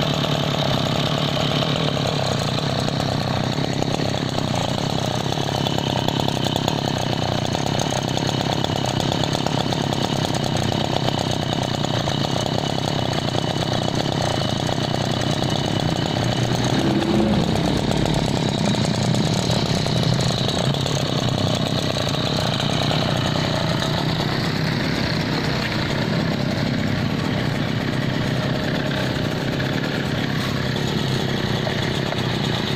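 Maru SV20 brush cutter's small petrol engine running steadily at idle.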